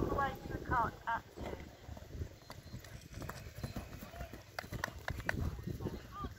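A galloping horse's hooves on turf, heard as a scattered run of dull thuds in the middle, with voices in the background at the start.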